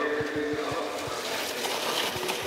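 Trackside sound of cross-country skiers skating past on snow: a steady hiss with several short low thumps, and a faint held tone through the first second.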